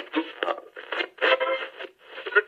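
Thin, band-limited music and voice played through a small portable cassette radio's speaker, coming in choppy bursts.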